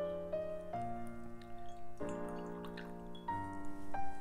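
Soft background piano music: slow, held notes that change a few times.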